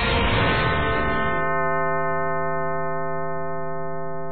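Title theme music: a dense swell that, about a second in, settles into one long held tone that slowly fades.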